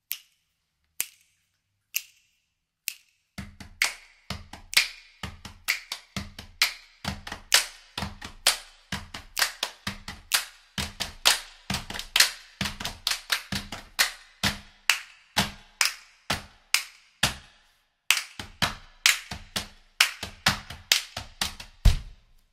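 Rhythmic hand clapping and finger snapping. Four single claps about a second apart, then from about three seconds in a quick, steady clapping and snapping pattern over a low thump on the beat.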